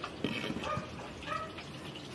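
A cleaver knocks twice on a wooden chopping board as it cuts through a tomato. Short high animal cries repeat about twice a second in the background.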